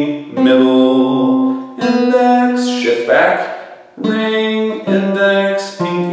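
Acoustic guitar played one note at a time, walking down a major scale in the G-shaped movable pattern. About five or six notes, roughly one a second, each left ringing until the next and each a step lower than the last.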